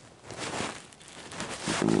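Irregular rustling and handling noise: a terry towel and a hand-held camera being shifted about close to the microphone. A man's voice starts near the end.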